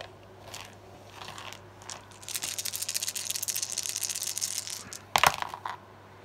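A handful of six-sided dice rattling for about three seconds as they are shaken and rolled, a dense run of small clicks, followed by a brief louder sound just after five seconds in.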